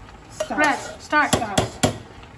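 Serving spoon knocking three times in quick succession against an aluminium rice pot, sharp taps about a quarter of a second apart in the second half, as cooked rice is scooped out and shaken off the spoon.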